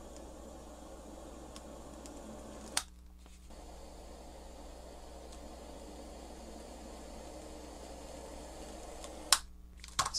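Small handheld gas torch burning with a faint steady hiss. About three seconds in a click is followed by a brief dropout before the hiss returns, and near the end a click is followed by the hiss stopping as the torch is shut off.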